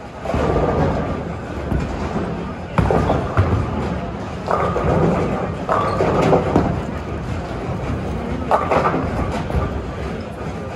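Bowling alley ambience: people talking over the low rumble of balls rolling down the lanes, with sharp knocks and clatter of balls and pins, the loudest about three seconds in.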